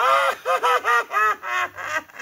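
A man's high-pitched, cackling imitation of the Siguanaba's laugh: a quick run of about seven rising-and-falling 'ja' syllables, about three a second.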